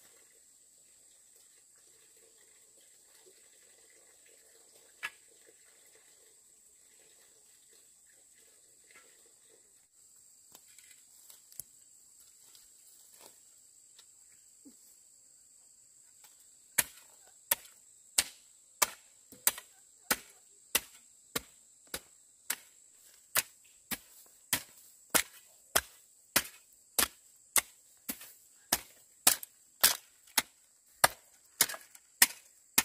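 A hand hoe chopping into dry, stony soil in a steady run of strokes, about two a second, starting a little past halfway. Underneath, a steady high-pitched insect buzz.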